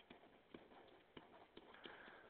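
Near silence with a few faint, irregular clicks of a pen stylus tapping on a tablet surface while handwriting.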